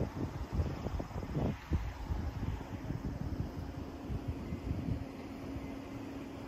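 Outdoor low rumble with wind buffeting the microphone in gusts over the first couple of seconds. A steady low hum, as from a fan or machine, comes in after about two seconds.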